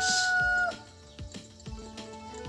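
A rooster crowing: the long held final note of its crow falls slightly and stops less than a second in. Faint background music follows.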